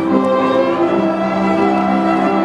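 A small string ensemble of violins and a cello playing together in long, smoothly connected bowed notes.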